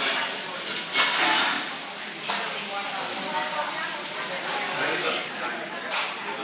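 People talking in a restaurant, the words not clear, with a brief louder rush of noise about a second in.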